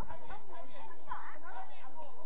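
Several overlapping voices of sideline spectators chattering and calling out, no single speaker clear.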